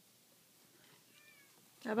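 A domestic cat giving a faint, short meow about a second in.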